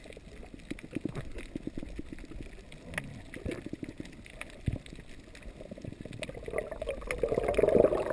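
Underwater sound through a housed camera: low muffled water noise with many faint scattered clicks and crackles. Near the end it swells louder as the camera rises toward the surface.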